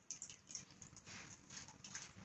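Faint handling noise: scattered light clicks, with a soft rustle building from about a second in.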